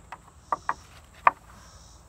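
Three short, sharp wooden knocks, two close together about half a second in and one just past a second: pegs clacking in the holes of a wooden pegboard beam as a climber hanging from them shifts his grip.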